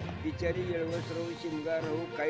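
A man's voice speaking, with background music underneath.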